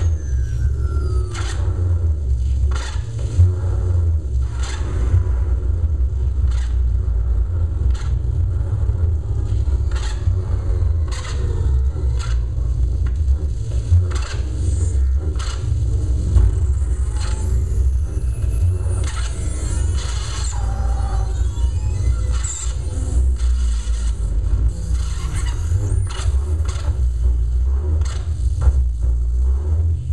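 Live experimental electronic noise music played on tabletop gear: a heavy, steady low rumble under scattered sharp clicks and scrapes, with high squealing glides that rise and fall about two-thirds of the way through.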